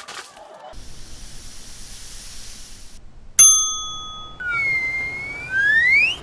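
A faint hiss, then a single bell-like ding a little past halfway that rings for about a second, followed by a whistle-like sound-effect tone that sags and then slides sharply upward near the end.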